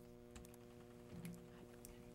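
Near silence: room tone with a steady low hum and a few faint, scattered clicks.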